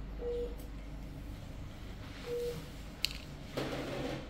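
An operating-theatre patient monitor beeps a short mid-pitched tone about once every two seconds. A sharp click comes about three seconds in, followed by a brief rustle.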